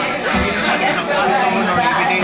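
Crowd chatter close by, people talking over a live acoustic guitar-and-vocal set that plays on more faintly behind them.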